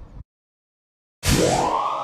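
Synthesized "time machine noise" transition effect: after about a second of dead silence, a sudden loud swoosh whose pitch sweeps upward and settles into a steady electronic drone.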